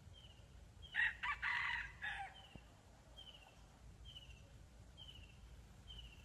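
A red junglefowl rooster crowing once, about a second in: a short crow lasting just over a second. Behind it, a faint high, short chirp repeats a little more than once a second.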